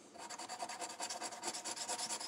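Edge of a coin scratching the coating off a lottery scratch-off ticket in rapid repeated strokes.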